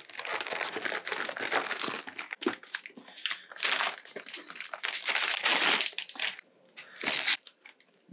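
Plastic anti-static bag crinkling and rustling as a motherboard is unwrapped from it, in irregular bursts that die down about six seconds in, with one last short rustle near the end.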